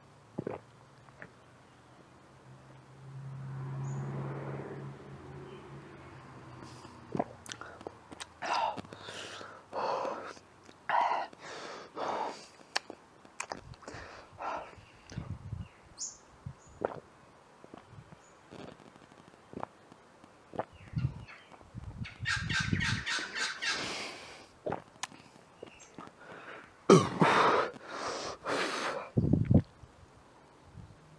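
A man chugging a glass of fizzy soft drink: a run of gulps and swallows with breaths and gasps between them, and another loud run of gulps near the end.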